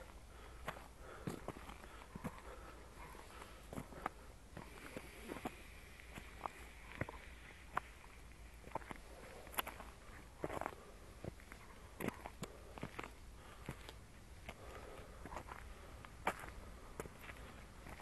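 Footsteps on a stony dirt track, walking uphill: irregular soft crunches about one to two a second.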